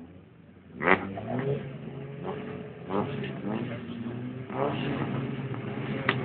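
Several rallycross cars revving their engines together on the start grid. The engines come in suddenly and loudly about a second in, then keep running with repeated sharp revs.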